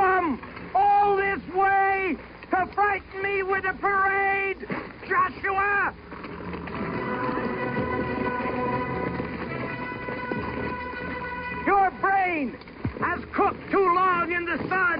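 A run of short horn blasts, each note held briefly and then sagging in pitch as it dies away, as rams' horns are blown while the army circles the city. Midway the blasts give way to a few seconds of steadier held tones over a wash of noise, and then short blasts start again near the end.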